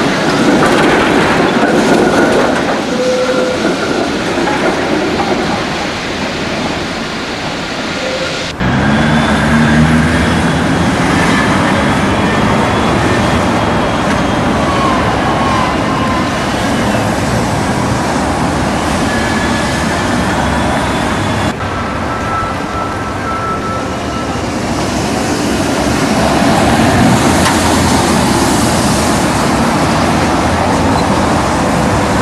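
City trams running on street rails, with road traffic around them. The sound changes abruptly twice, about eight and a half and twenty-one seconds in.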